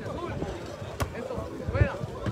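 Crowd chattering, with one sharp slap about halfway through as a hand strikes the volleyball on the serve.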